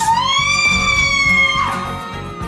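A woman's long high-pitched scream, rising at the start, held for about a second and a half, then sinking away, over trailer music with a beat.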